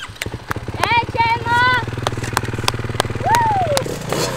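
Dirt bike engine running steadily, its firing pulses heard throughout, while a person's voice calls out twice over it.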